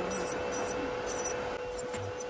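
Electric nail drill filing a fingernail, running with a steady whine over the even rushing of a tabletop nail dust collector's fan.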